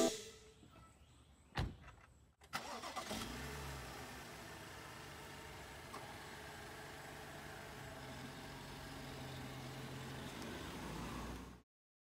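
A BMW 5 Series sedan's engine starting about two and a half seconds in and then idling steadily, heard faintly, with a single thump shortly before the start. The sound cuts off suddenly near the end.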